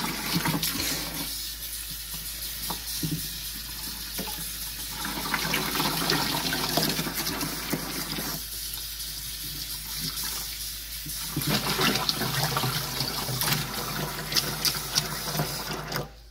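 A kitchen faucet runs in a steady stream into a plastic bucket, splashing over a skein of hand-dyed yarn that is being rinsed by hand to wash out excess dye.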